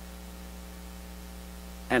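Steady electrical mains hum, a low buzz with many even overtones, carried by the microphone and sound system.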